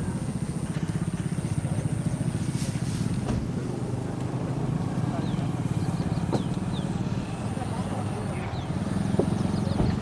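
A vehicle engine idling steadily, a low, even running sound.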